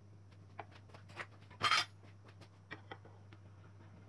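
Light clicks and taps of kitchen utensils and a glass plate on a stone countertop, with one louder, brief clatter about a second and a half in, as a slice of chilled dessert is served.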